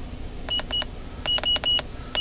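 Keypad beeps from an Autel MD808 handheld scan tool as its buttons are pressed to move through a menu: five short, high electronic beeps, two about half a second in and three in quick succession a little later.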